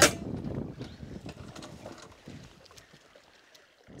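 Scuffing and rustling on dry ground and brush, loudest at first and dying away over about two seconds.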